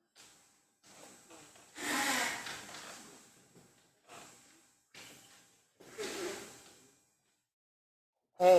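Breathing and rustling picked up by a microphone, in about six short, separate bursts that each cut off sharply. The loudest comes about two seconds in.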